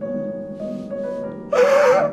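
A woman sobbing: after a quiet stretch, about one and a half seconds in, she breaks into a loud, wavering cry, over soft piano music.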